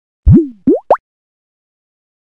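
Cartoon-style pop sound effect: three quick pops within the first second. The first is low and sweeps up and back down; the next two are short upward slides, each higher than the last.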